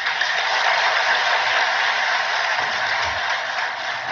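A large audience applauding: a dense, steady clapping that breaks out abruptly and dies away near the end.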